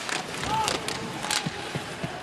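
Ice hockey play in an arena: skates scraping over the ice and a few sharp clacks of sticks and puck, over a steady background of crowd noise.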